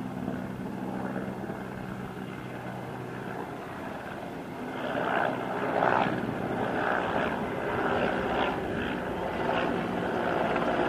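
A military helicopter flying overhead. About halfway through it grows louder as it comes nearer, with a rhythmic pulsing from the rotor over a steady engine hum.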